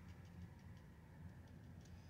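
Near silence inside a car: a low steady rumble with a few faint ticks.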